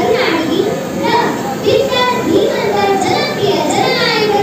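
A young girl's voice speaking through a microphone, in short phrases.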